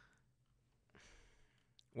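Near silence, with a faint breath or sigh about a second in.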